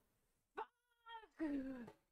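A man's whining vocal cry of dismay: a short, high, wavering whimper, then a lower moan that falls in pitch, at running out of time.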